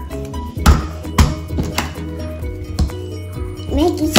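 Background music, with four sharp knocks on a wooden tabletop spread through the middle; the first two are the loudest.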